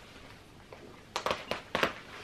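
Snap fasteners on a jacket being pulled open: about five or six sharp clicks in quick succession, starting a little past one second in.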